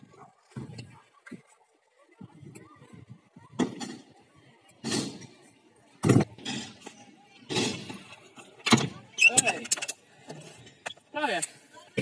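Stunt scooter rolling on concrete skatepark ramps, with several sharp clacks of the scooter landing and hitting the ground as a rider attempts a flip trick. The loudest clack comes about six seconds in and another near nine seconds.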